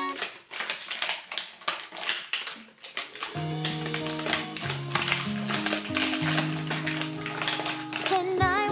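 Clear cellophane wrapping crinkling in quick irregular crackles as it is pulled off a small toy. Background music with held chords comes in about three seconds in and carries on under the crinkling.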